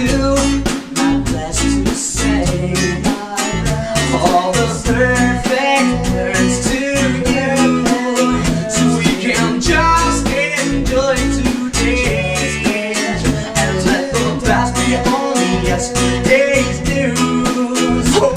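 A small band playing a pop-rock song: acoustic guitar strumming and electric bass over a steady beat, with a man singing.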